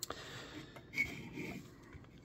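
Faint handling noise of a plastic scale model airplane being picked up and turned on a cutting mat: a light click, then soft rubbing.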